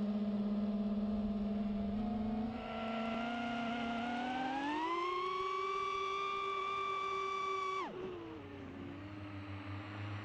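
FPV quadcopter's brushless motors and propellers whining at a steady pitch, then rising over about a second and a half as the throttle is pushed up for a climb and holding high. About eight seconds in the whine drops abruptly as the throttle is cut, then carries on lower and wavering.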